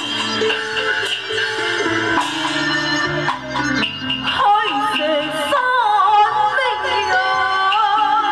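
Taiwanese opera music: instrumental accompaniment, with a woman singing into a handheld microphone over it from about four seconds in, a wavering, sliding melodic line amplified through the stage speakers.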